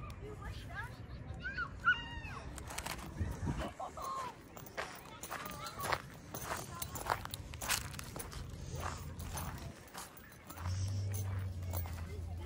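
Footsteps crunching over dry leaves, twigs and brush, a step about every half second through the middle, with faint distant voices and a low rumble on the microphone.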